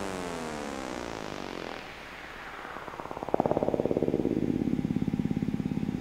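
A synth effect sound sliding downward in pitch and fading over about two seconds. About three seconds in, a fast-pulsing synth bass comes in and plays on.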